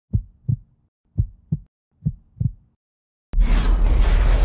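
Heartbeat sound effect: three low double thumps, about one pair a second, with silence between. Near the end a sudden loud hit breaks in and keeps sounding.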